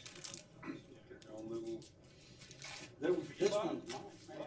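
Indistinct conversation in a small room, with sudden rustling and handling noises, like paper or packaging being handled, near the start, late on and just before the end.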